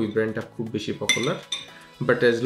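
A piece of cutlery clinks against a plate about a second in, a short bright clink with a brief ring.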